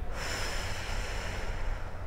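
A person breathing out steadily for about two seconds while holding a yoga pose, the breath starting suddenly and easing off near the end, over a steady low rumble.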